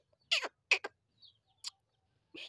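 A bulbul giving a few short calls, each falling sharply in pitch: three close together in the first second and one more past the middle.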